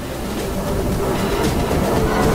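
Heavily distorted, effects-processed logo soundtrack: a dense, noisy wash of sound that grows steadily louder.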